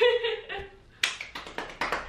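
A woman's high-pitched excited squeal, then a quick run of about half a dozen hand claps starting about a second in.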